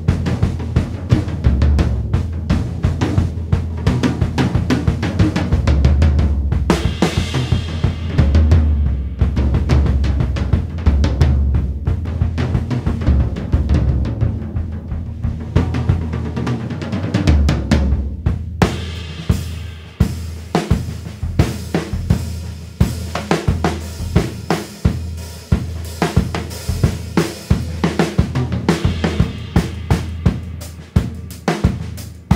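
A Gretsch drum kit played with sticks: snare, bass drum and toms with hi-hat and cymbals. The first half is busy, with heavy low drum thuds and cymbal crashes. Past the halfway point it settles into a steady, even beat.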